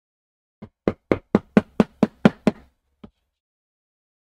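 A quick run of about nine sharp, even mallet taps, four or five a second, on a leatherworking tool held against leather, with one lighter tap a little later.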